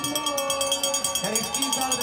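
Spectators ringing cowbells in a continuous rapid clanging, with crowd voices underneath, cheering on a ski jumper during his jump.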